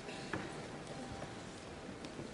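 Faint hall ambience of a large seated audience waiting: a low, even rustle with a few sharp knocks, the loudest about a third of a second in.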